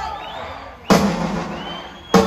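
A single loud crash on a drum kit's Avantgarde cymbals about a second in, ringing and slowly fading, in a pause of a live drum solo. Whistles from the audience come around it, one rising whistle near the end.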